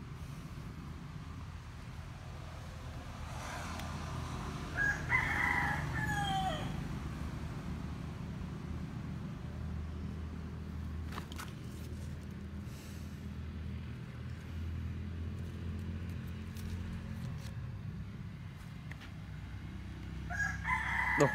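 A rooster crows once, about five seconds in: a call of about two seconds that falls away at the end. A steady low hum runs underneath.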